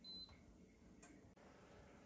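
Near silence: room tone, with one short, high electronic beep right at the start from the glass-ceramic hob's touch controls as the cooktop is switched on.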